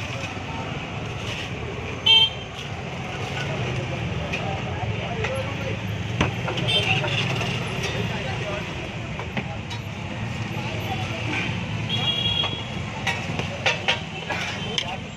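Steady street traffic noise with a short, loud vehicle horn toot about two seconds in and a fainter honk around twelve seconds, with voices in the background.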